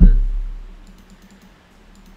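A low thump that dies away over about half a second, followed by a few faint clicks from a computer keyboard and mouse.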